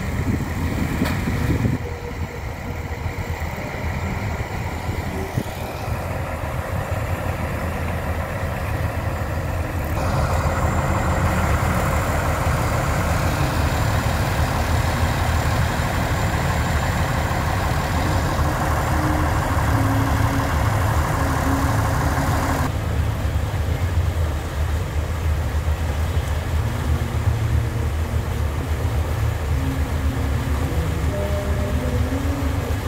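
Engine of a sand-pumping boat running steadily, a low continuous drone. About ten seconds in a louder, harsher layer joins it and falls away again a little after twenty seconds.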